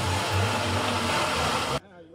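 A small car's engine running hard as the car struggles through deep mud ruts, with a steady rushing noise over it. The sound cuts off abruptly near the end.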